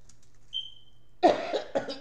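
A woman coughing: three quick coughs close together, starting a little past a second in.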